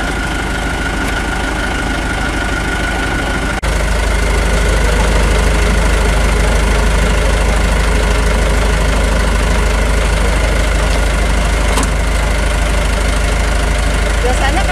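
A vehicle engine idling steadily with a low hum. The sound briefly cuts out about four seconds in, then comes back a little louder.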